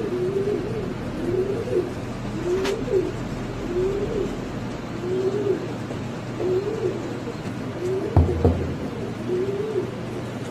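Black fancy pigeons cooing during a strutting, crop-puffed display: a short rising-and-falling coo about once a second, over and over. A dull low bump sounds about eight seconds in.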